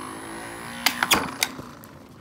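A small dog, a Boston terrier, rolling on a rug with a chew stick: several sharp clacks and knocks in quick succession about a second in, over a low steady hum that fades out just before them.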